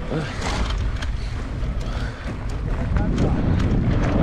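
Mountain bike riding over a rough dirt trail, heard from a handlebar-mounted camera: a steady rumble of wind on the microphone and tyres on the ground, with frequent sharp clicks and rattles from the bike over stones. It gets louder in the last second or so.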